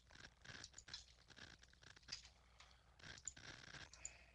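Faint computer keyboard typing and mouse clicks, irregular taps as data is keyed into a program.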